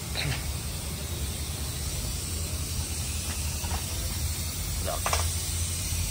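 Steady tire-shop background noise: a constant low hum under a broad hiss, with faint voices in the background.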